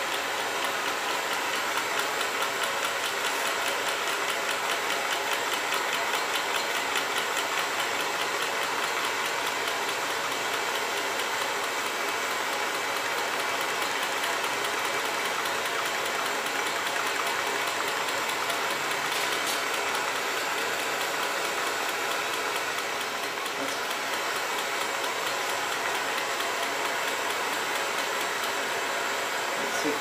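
Small hot-air Stirling engine running steadily, its pistons and rod linkage knocking in a fast, even rhythm, over the steady hiss of the blowtorch that heats it.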